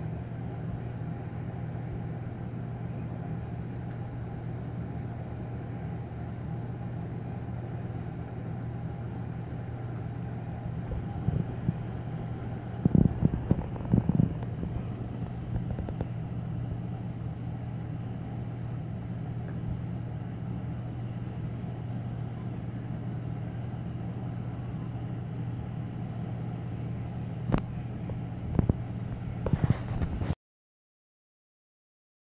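Steady low hum of background room noise, with a few soft thumps or knocks about eleven to fourteen seconds in and again near the end.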